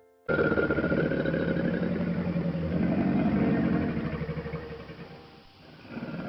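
Crocodile grunting: a rough, low, rumbling growl that starts suddenly, swells in the middle and fades away near the end.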